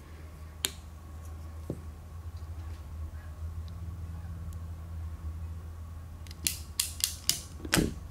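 Ratcheting crimp tool being squeezed onto an insulated wire connector: a few isolated clicks early, then a quick run of about six sharp ratchet clicks near the end as the jaws close. A steady low hum runs underneath.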